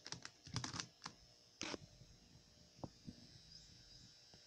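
Faint, quick run of light clicks and taps from hands handling plastic 3x3 Rubik's cubes on a desk, with one short scuff about one and a half seconds in and a few fainter taps after it.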